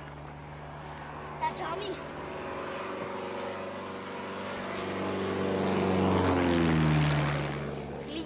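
Single-engine propeller light aircraft flying low overhead. Its engine drone grows steadily louder, then drops in pitch as the plane passes about six to seven seconds in.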